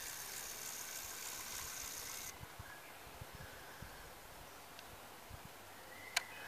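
Faint steady outdoor background hiss with a few soft low bumps scattered through it; the hiss thins out about two seconds in.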